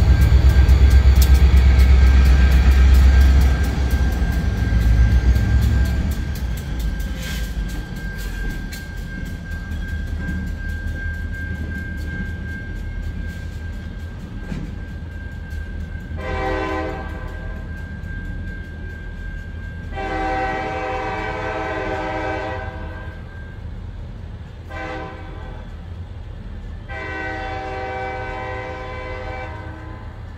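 CSX freight locomotives led by a GP38-3 rumbling loudly as they pass close by for the first few seconds, fading as the train pulls away. The locomotive horn then sounds four times, short, long, short, long, from farther down the track.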